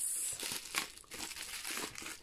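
Plastic bubble wrap crinkling in the hands as it is pulled off a small wooden phone stand, in an irregular run of crackles.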